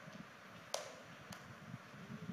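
Low room tone with two short, sharp clicks a little over half a second apart, the first one louder.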